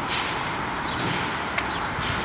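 Steady outdoor background noise picked up by the camera's own microphone, an even hiss, with a couple of faint clicks, one near the start and one about one and a half seconds in.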